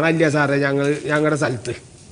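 A man speaking in Malayalam, his voice held on a long, drawn-out level pitch before stopping near the end.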